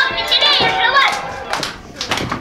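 Young children's voices and chatter, high-pitched, with faint music underneath; the voices die down near the end.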